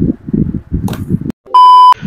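A loud electronic beep, one steady high tone held for about half a second near the end. Before it come a few moments of muffled, dull-sounding voice.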